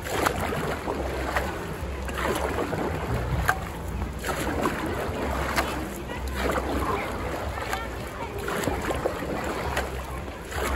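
Dragon boat paddle strokes in a swimming pool: the blade plants and pulls through the water with a splashing rush, about one stroke every two seconds, five in all, over a low wind rumble on the microphone.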